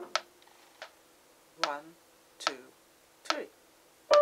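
Metronome ticking at 72 beats a minute, about five clicks in all, with a voice counting in on the last three beats before the piano comes back in. The previous piano chord is just dying away at the start.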